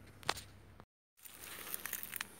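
Faint rustling and scattered clicks of hands handling the plant, with one sharp click early on. A short gap of dead silence falls just before the middle, where the recording is cut.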